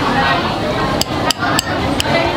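Metal spoon clinking against a plate of rice as the food is stirred and scooped: three quick, sharp clinks in the second half, with a fourth as it ends.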